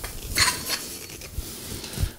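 Metal ceiling-fan housing and its wired fitting being handled: light clinks and rubbing, with a short rustle about half a second in.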